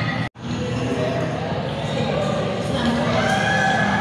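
Film soundtrack played over loudspeakers in a large hall: voices over background music, with the sound cutting out completely for a moment about a third of a second in.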